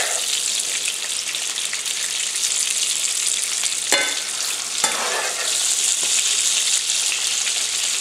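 Andouille sausage sizzling in butter and rendered fat in a hot frying pan, a steady hiss, with two short sharp clicks about four and five seconds in.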